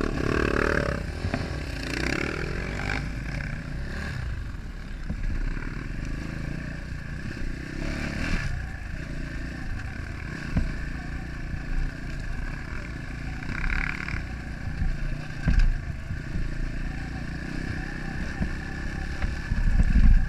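Enduro dirt bike engine running under load as it is ridden along a rough dirt track, with a few short knocks from the bike going over bumps.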